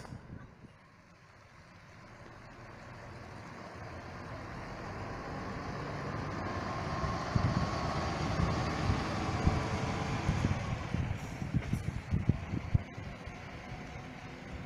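A large tour bus driving past: engine and tyre noise builds as it approaches, is loudest as it passes about halfway through, then fades as it moves away.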